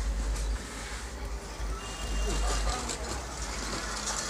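Steady low rumble and background noise with faint voices, and a short high beep about two seconds in.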